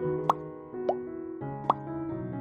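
Soft electric-piano background music with three short rising 'bloop' pop sound effects, like water drops, about a third of a second, one second and near the end, the pops of a subscribe-button animation.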